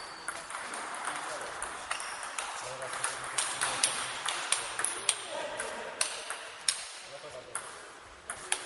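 Table tennis ball in a rally, clicking sharply off the paddles and bouncing on the table, a few clicks a second and loudest in the middle of the stretch, with the clicks echoing in a large hall.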